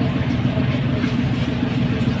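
A steady low engine-like hum, as of a motor running at idle, with no speech over it.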